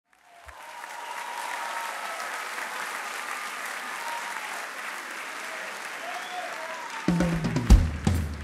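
Concert audience applauding and cheering. About seven seconds in, a drum kit comes in with loud bass-drum hits and cymbal strikes.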